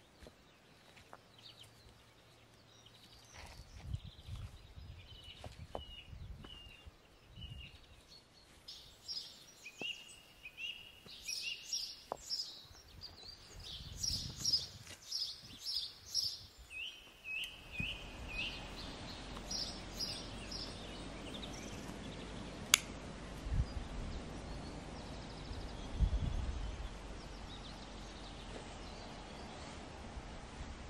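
A songbird singing repeated short chirping phrases, over soft knocks and thuds of stones and firewood being handled. A little past halfway the sound turns to a steadier outdoor hiss, with one sharp click.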